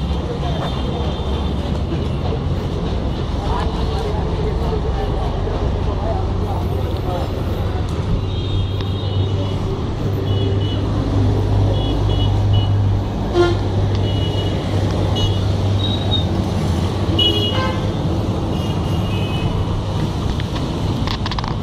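Road traffic: vehicle engines running with a steady low hum, and several short horn toots, mostly in the second half.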